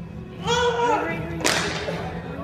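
A short high-pitched yell from an actor, a lower voice, then a single sharp crack about one and a half seconds in, ringing briefly in the hall.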